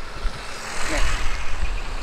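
Road traffic heard from a moving motorcycle: a passing motor vehicle swells up and fades about a second in, over a steady low wind rumble on the microphone.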